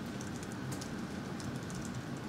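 A scatter of light, quick clicks from laptop keys over a steady low room hum.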